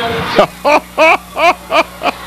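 A man laughing heartily in a run of short, evenly spaced "ha" bursts, about three a second.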